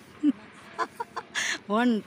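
A voice making a few short sounds, then starting a count with a drawn-out, sing-song "one" near the end.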